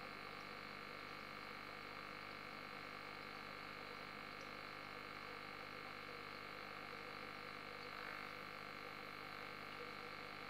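Faint, steady bubbling and hum of an aquarium's air-driven sponge filter, with bubbles breaking at the water surface.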